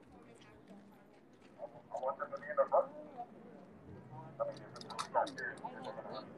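Indistinct talking from people in a gathering crowd, in two short spells, with a few sharp clicks near the end.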